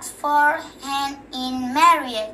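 A young girl singing a short unaccompanied tune: a few held notes one after another, with the last note sliding near the end.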